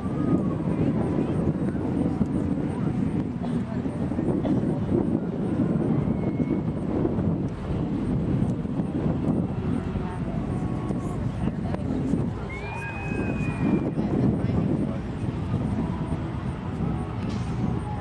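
Low, fluctuating rumbling noise, with indistinct voices in the background.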